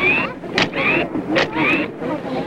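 Nikon EM camera with its motor drive firing a rapid sequence: the shutter clicks, then the motor winds the film on with a short rising whine, over and over about every 0.8 seconds.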